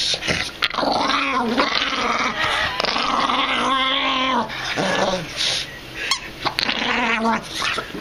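Pug growling to keep hold of his stuffed penguin toy as someone tries to take it away. It is a run of long growls that rise and fall in pitch, with brief breaks.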